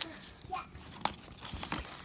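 Rustling and crinkling of foam packing peanuts and cardboard as hands dig into a box and lift out a card holder in its plastic packaging, with a few soft clicks.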